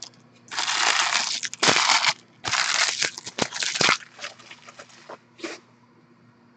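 Foil wrapper of a Panini Prizm football card pack crinkling and crumpling in the hands, in three crackly bursts of about a second each, then a few softer rustles.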